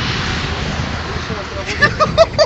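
A steady rushing noise with a low rumble, followed near the end by a man's voice.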